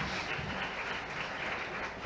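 Audience applauding: steady clapping from many hands.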